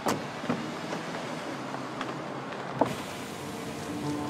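Mercedes-Benz saloon doors shutting: four solid knocks, the first and one near the end the loudest, over a steady car and street hum. Just before the end a steady electric motor whine begins as a rear power window starts to lower.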